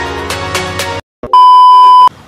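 Electronic background music that cuts off about halfway through. After a brief silence and a click comes a loud, steady, high single-pitched beep: the test-tone sound effect played over television colour bars.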